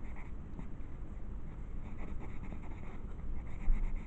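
A pen scratching on sketchbook paper in quick, repeated short strokes while inking a drawing, with a single low bump near the end.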